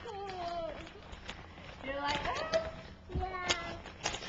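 A child makes three short wordless vocal sounds that glide up and down in pitch, the first falling. Wrapping paper and tissue crinkle and rustle as they are pulled open.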